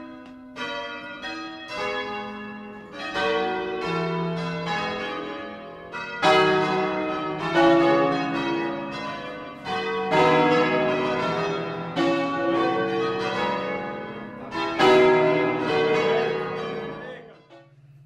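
Church bells rung 'a distesa', swung full circle by rope, striking in quick overlapping succession, heard close from inside the ringing chamber. The strikes grow louder about six seconds in, then stop near the end, leaving a low lingering hum.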